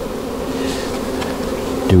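Honeybees buzzing steadily around an open hive, a dense, wavering hum, with a few faint taps of a hive tool against the wooden frames.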